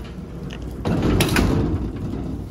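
Garage roller door being pulled down, a rattling rumble of the slats that grows louder about a second in.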